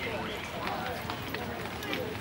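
Indistinct background voices of people talking, too distant to make out words, over steady outdoor noise.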